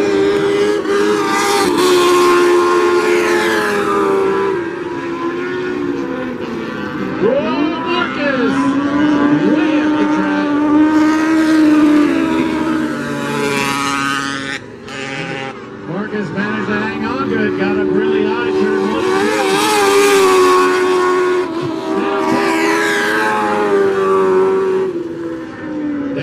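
Mini sprint car engines running hard as the cars race around a dirt oval. They grow loud and sweep up then down in pitch each time a pack passes, several times over.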